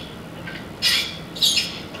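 Sucking hard through a drinking straw in a cup: two short squeaky slurps, about a second in and again half a second later.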